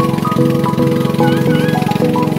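Background music: a melody of short held notes stepping from one pitch to the next, with gliding high tones over it.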